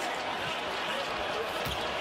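Steady background noise of a basketball arena, with a basketball bouncing once on the hardwood court near the end.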